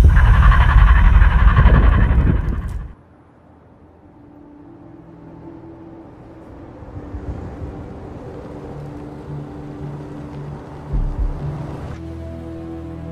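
Film trailer sound design: a loud, deep rumble that cuts off suddenly about three seconds in. It is followed by quiet, sustained low score tones that slowly swell, with a brief low thud near the end.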